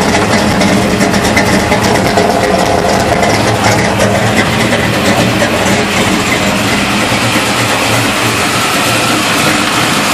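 Freshly installed Chevy 355 small-block V8 idling steadily on its first run.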